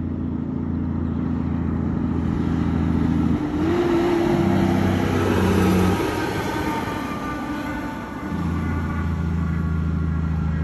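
Freightliner Argosy truck's diesel engine and tyres as it goes past at speed. The sound is loudest about four to six seconds in, and the pitch falls as the truck passes.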